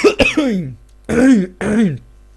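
A man clearing his throat and coughing several times, loud and close to the microphone, his voice sounding through each burst.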